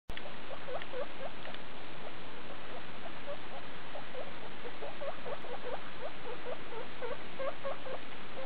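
Skinny guinea pigs squeaking: a steady run of short, high chirping calls, several a second, over a constant background hiss.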